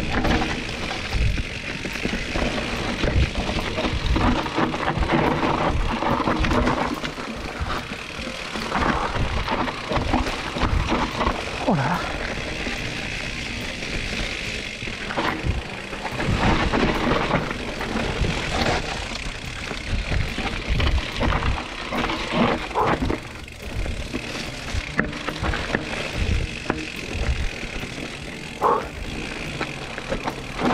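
Riding a full-suspension mountain bike down a dirt forest singletrack: the rush of wind on the camera microphone and tyres rolling over dirt and dry leaves, broken by frequent thuds and rattles as the bike hits bumps.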